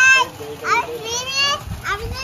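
A toddler's high-pitched squeals and cries, a few short calls that rise and fall in pitch.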